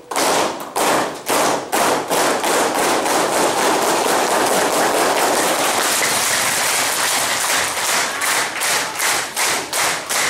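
A roomful of people clapping together in time. The claps speed up into a continuous roll of applause, then settle back into a steady beat of about two to three claps a second.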